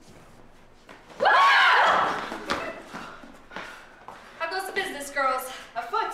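A loud vocal outburst about a second in, a voice shouting with its pitch bending up and down for under a second, then speaking voices from about four seconds in.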